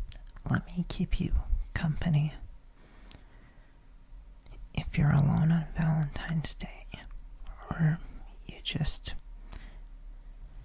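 Close-microphone ASMR whispering and mouth sounds in short bursts, with small clicks among them and a lull of about two seconds partway through.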